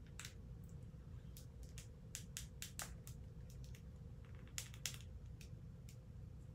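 Faint, irregular clicks and taps of a small plastic action figure and its detachable toy accordion being handled, over a low steady hum.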